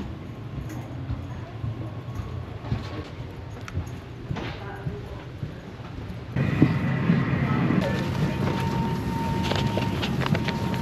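Low steady hum along an airport jet bridge with a few light knocks. About six seconds in the sound cuts abruptly to louder airplane cabin noise, with passengers' murmur and a steady high tone.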